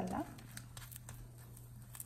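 Faint light clicks and scraping of a slotted spatula on a nonstick pan as a dosa is folded, over a low steady hum.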